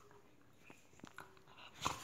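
Wheaten terrier mouthing and nipping at a socked foot: faint scattered clicks and rustles, with a louder brief scuffle near the end.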